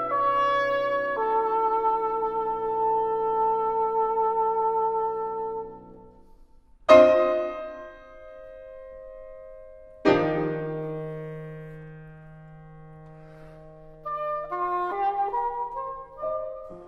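English horn and piano playing a slow classical duo. The English horn holds long notes with vibrato over the piano until they fade out about six seconds in. After a brief pause, two loud piano chords ring and die away, and a quick rising run of short notes starts near the end.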